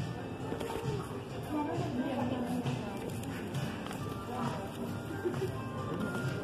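Background music playing in a shop, mixed with indistinct voices, and a faint shuffle of record sleeves being flipped through in a rack.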